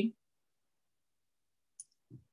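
The last syllable of a spoken question, then near silence on gated video-call audio. Near the end there is one faint, very brief high click.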